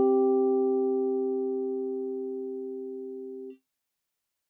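A perfect fifth, middle C and the G above it, sounded together as a held digital-piano tone. It fades evenly and cuts off about three and a half seconds in.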